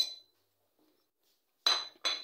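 Steel spoon clinking against a small plate while spices are tapped off it: one click at the very start, then another about one and a half seconds later that rings briefly, with a quiet gap between.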